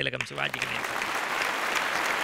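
An audience applauding, starting just after a man's voice stops near the start and building slightly.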